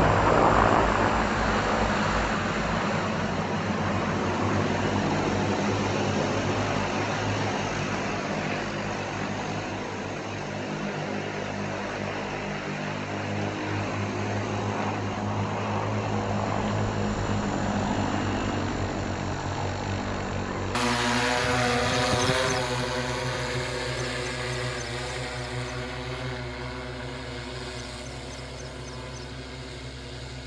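The propellers of a multirotor agricultural spray drone run steadily as it hovers low, a continuous buzzing hum. About two-thirds of the way in the sound changes abruptly at an edit, and then it grows gradually quieter.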